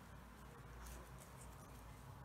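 Near silence with faint, soft ticks and light scraping of knitting needles as knit stitches are worked, over a low steady hum.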